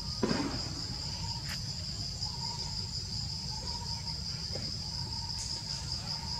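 Steady, high-pitched drone of an insect chorus in the forest canopy, with a brief thump about a quarter of a second in and a faint click a little later.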